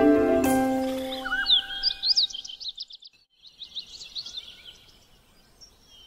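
Melodic instrumental music fading out in the first second and a half, then a bird singing a run of quick high chirps and trills for about three seconds, followed by a faint lull.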